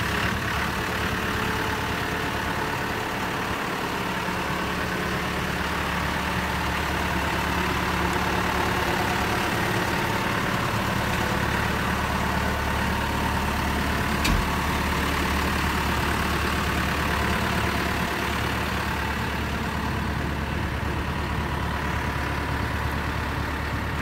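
Diesel engine of an articulated dump truck idling steadily, with one brief sharp knock about halfway through.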